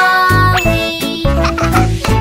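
Bright cartoon chime and tinkling jingle over children's music, with a rising glide about half a second in and a sparkle of high notes near the end. It works as a success cue for the block fitting into the shape sorter.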